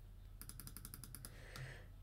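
Faint, rapid clicks at a computer, about ten in a second, as an image is zoomed in step by step, over a faint steady low hum.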